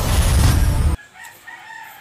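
Loud edited-in magic transformation sound effect, a rushing burst with a heavy low rumble that cuts off abruptly about a second in. Faint wavering calls follow in the background.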